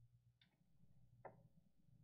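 Near silence: room tone with a steady low hum and two faint clicks, about half a second and a second and a quarter in.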